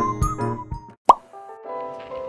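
Background music with plucked notes breaks off, a single loud cartoon 'plop' sound effect marks the edit about a second in, and a softer tune starts after it.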